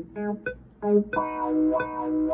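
Electric guitar parts of a reggae arrangement played back: a few short plucked notes, then a chord held from about halfway through. Light percussion ticks come in at intervals.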